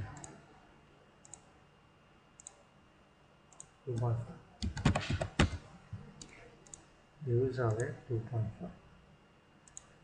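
Computer mouse clicks, single and spaced a second or so apart, with a louder quick run of clicks and key taps about five seconds in.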